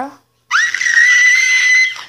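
A long, high-pitched scream that starts about half a second in, sweeps up and holds one steady pitch, then cuts off sharply near the end.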